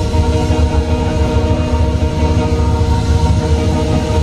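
Live blues band holding one sustained chord: electric guitar, bass and Nord Electro keyboard ring steadily over a continuous low rumble from the drums.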